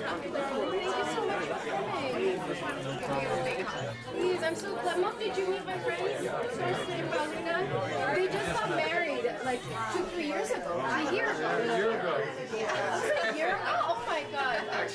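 Indistinct chatter of many people talking at once, overlapping conversations and greetings in a room, with music underneath.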